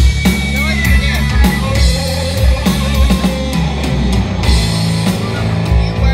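Live rock band playing an instrumental passage: electric guitar playing lead lines with bent notes over bass guitar and a drum kit keeping a steady beat.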